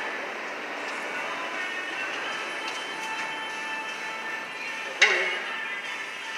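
Steady repair-shop background noise with faint distant voices, broken by one sharp knock about five seconds in.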